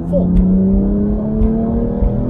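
BMW M2's turbocharged straight-six engine accelerating at full throttle, heard from inside the cabin, its pitch climbing slowly and steadily as the revs build.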